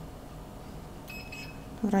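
Handheld infrared thermometer giving a short, high electronic beep about a second in as it takes a temperature reading.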